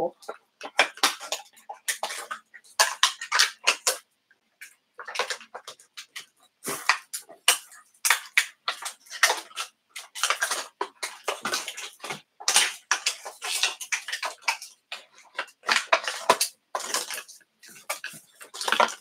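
Small hard-plastic doll accessories and their wrapping being handled by hand: irregular crinkling, rustling and light clicking in short bursts, with brief pauses between them.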